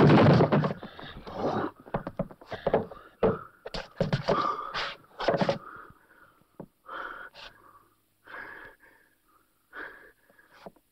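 Fist-fight sound track from a film. A loud burst of noise comes at the start, then a run of sharp knocks and scuffs. In the last few seconds the winded fighters gasp and pant heavily, about once a second.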